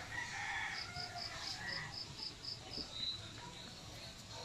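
A rooster crowing, over a high insect chirping of about four to five pulses a second.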